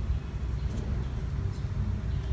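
Steady low rumbling background noise, with a few faint light clicks.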